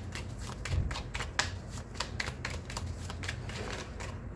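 A tarot deck being shuffled in the hands: a quick, uneven run of crisp card clicks, about five a second.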